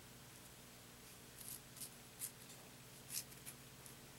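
Faint rasps of braided cord sliding through fingers and rubbing over itself as a stopper knot is tied. There are about five short strokes, starting about a second and a half in.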